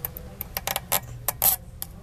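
Fingers picking at and peeling a small piece of plastic off a car speaker's grille badge: a run of sharp, crackly clicks.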